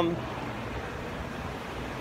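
Steady, even background noise with no distinct event.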